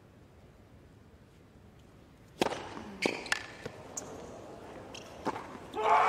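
Tennis ball struck by rackets and bouncing on a hard court: a few sharp hits a fraction of a second apart, starting about two seconds in. Near the end, a stadium crowd bursts into loud cheering as the set point is won.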